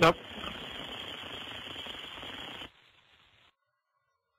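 A one-word spoken reply over an air traffic control radio recording, then the steady hiss of the open radio channel. The hiss drops sharply after about two and a half seconds and cuts to silence about a second later.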